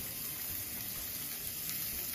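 Thin-cut T-bone steaks sizzling steadily on a hot electric griddle set at 300.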